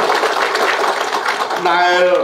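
An audience clapping: a dense, steady patter of many hands. A man's voice comes back in near the end.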